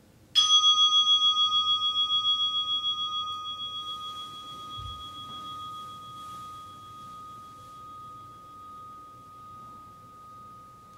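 A meditation bell struck once, ringing with a long, slowly fading tone that wavers as it dies away; it marks the close of the sitting meditation. A soft low thump sounds about five seconds in.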